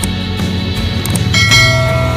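Background music with a subscribe-button sound effect laid over it: short mouse clicks, then a notification bell that rings out loudly near the middle and keeps ringing.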